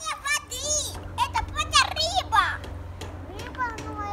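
Young children's high-pitched voices calling out and chattering in play, busiest in the first two and a half seconds, with a low steady hum underneath.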